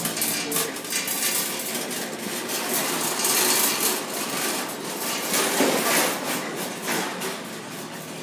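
Irregular clattering knocks and clinks at a coin-operated claw machine, loudest a few seconds in and again near the end.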